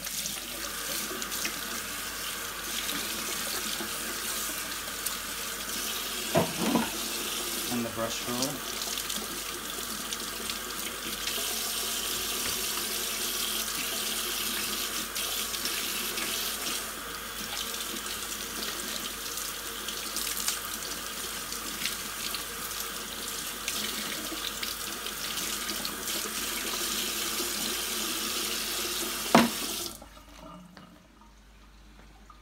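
Kitchen tap running steadily into a ceramic sink, water splashing over plastic vacuum-cleaner parts as they are rinsed by hand. A few short knocks come about six and eight seconds in, and a louder knock comes just before the end.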